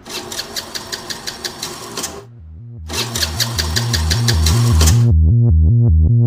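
A scooter's electric starter cranks the engine twice, in rapid even chugs for about two seconds each, and the engine does not catch. A pulsing electronic bass beat builds underneath and is loudest near the end.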